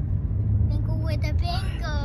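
Steady low rumble of a car's engine and road noise inside the cabin, with a voice calling out a long, falling, sing-song word near the end.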